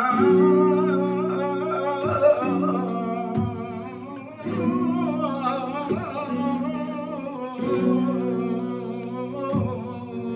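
Male flamenco singer singing a soleá in long, ornamented, wavering lines, accompanied by a flamenco guitar whose chords are struck about every two seconds and left ringing.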